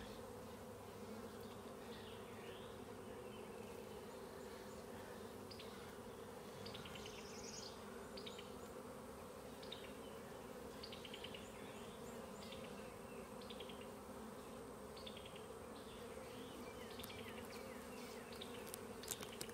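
Honey bees buzzing on a brood frame held over an open nuc, a steady hum, with faint short high chirps repeating in the background.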